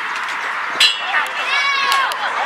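Players and sideline people shouting and calling out during a flag football play, with a sharp crack a little under a second in and a high-pitched yell near the end.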